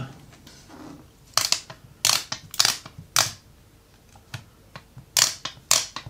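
A dust removal sticker being dabbed onto and pulled off an iPhone's glass screen, each lift a short sharp peel. Five peels come between about one and three seconds in, then a quicker run of four near the end.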